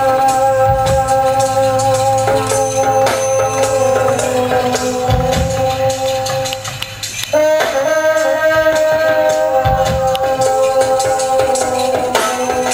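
Live band music led by hand percussion: djembe and shaker or tambourine hits over long held instrument notes, which break off briefly about seven seconds in and then return.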